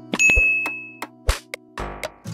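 A bright, bell-like ding about a quarter second in, ringing for most of a second before fading, over background music with short percussive clicks. A brief burst of noise comes near the end.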